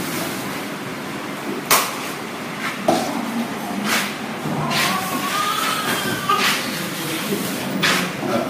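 Room noise with a steady hiss, broken by several sharp knocks, and a high voice rising and falling for about a second and a half in the middle.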